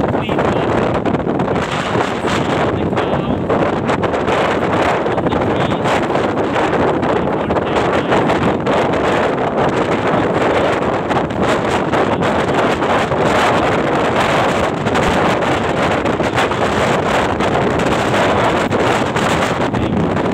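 Heavy wind buffeting the microphone while riding in an open moving vehicle, mixed with steady road and vehicle noise.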